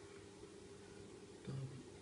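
Quiet room tone, with a short low murmured 'hm' from a man about one and a half seconds in.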